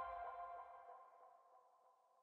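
The last held notes of an electronic intro chime dying away, fading out within about a second and a half.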